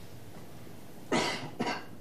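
A man coughs twice, about a second in: a sharp loud cough followed by a smaller one.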